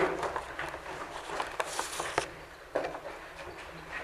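Quiet room noise with faint rustling and a few light knocks as voting cards are raised and papers handled, with a short rustle about a second and a half in.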